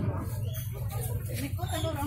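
Background chatter of shoppers and vendors at a busy market stall, with voices clearest in the second half, over a steady low hum.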